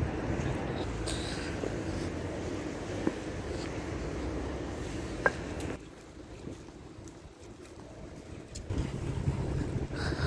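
Outdoor street background noise: a steady low rumble with wind on the microphone. It drops quieter for about three seconds past the middle, then returns, with a couple of faint clicks.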